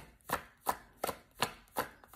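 A deck of cards being hand-shuffled, the packets slapping down on one another in a steady rhythm of about two to three sharp taps a second.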